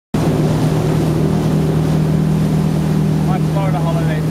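Nautique ski boat's inboard engine running at a steady towing speed, with the wash of its wake and wind on the microphone.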